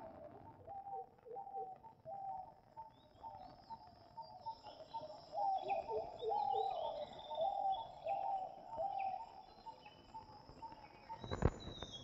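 Birds calling faintly: a quick run of short, repeated low calls with scattered higher chirps above them, busiest in the middle, over a faint steady high-pitched whine.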